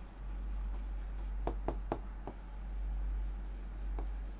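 Handwriting on a board: a few short, scratchy writing strokes come about one and a half to two and a half seconds in. Under them runs a steady low hum.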